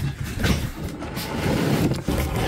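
Wooden chess box scraping as it is slid across the counter, a continuous rough scraping that grows a little louder toward the end.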